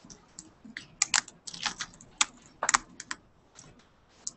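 Laptop keyboard being typed on close to the microphone: irregular keystroke clicks in short runs.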